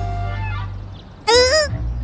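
Background music fades out. About a second in, a short, loud, honk-like comic cry with a wavering pitch is heard, lasting about half a second.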